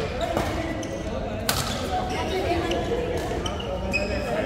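Badminton racket strings striking a shuttlecock during a rally: two sharp cracks, the louder one about a second and a half in.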